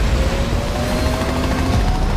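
Movie sound mix of a helicopter over an avalanche: steady helicopter rotor noise over a heavy low rumble, with music underneath and a faint, slowly rising tone.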